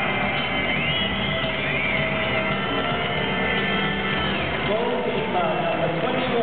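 Stadium public-address voice making player introductions in long, drawn-out calls that rise and fall in pitch, echoing over background music and the steady noise of a large football crowd.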